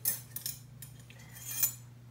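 A few light glassy clinks and knocks of a glass jar being handled on a desk, the loudest about a second and a half in.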